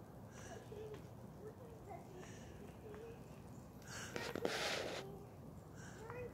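Faint, quiet voices in short fragments, with a brief rustling noise about four seconds in that is the loudest thing heard.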